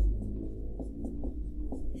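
Dry-erase marker writing on a whiteboard: a series of short strokes as letters and numbers are written, over a steady low room hum.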